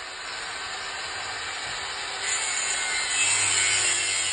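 A hand-held tool working on the truck's front end, making a steady scratchy hiss that grows louder about two seconds in.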